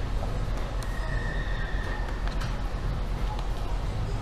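Steady low hum of indoor room noise in a restaurant, with a faint thin tone for about a second near the middle.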